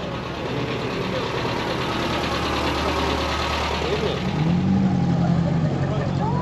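An NSU Prinz's small rear-mounted, air-cooled engine running at low revs as the car creeps past, its steady note growing gradually louder as it comes close.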